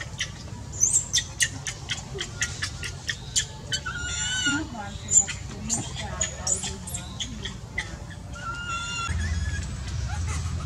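A baby macaque crying in high-pitched squeals, once for under a second about four seconds in and again, more briefly, near the ninth second, amid many sharp clicks and taps.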